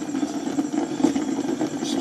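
Bedini pulse motor running with a steady, rapid buzz as its neodymium magnet wheel turns at about 105 rpm on three trigger coils.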